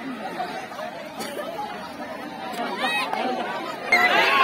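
Crowd of many people talking and calling out at once, growing louder near the end.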